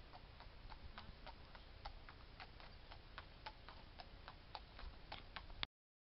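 Hooves of a horse walking on a tarmac road: faint, even clip-clop of footfalls, about three to four a second, over a low rumble of wind on the microphone. The sound cuts off suddenly near the end.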